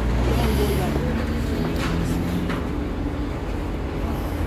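Steady low rumble of busy city road traffic, with engines running, and voices in the background.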